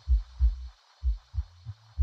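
Deep electronic kick drum and bassline of a house track: low thumps, two or three a second, in a repeating syncopated pattern, with a faint steady high synth tone above.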